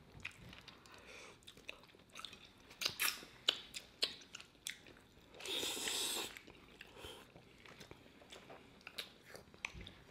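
Close-miked chewing and biting of pizza with a crisp, flaky crust: scattered small crunches and mouth clicks, with a louder cluster about three seconds in and one longer, louder noise a little past halfway.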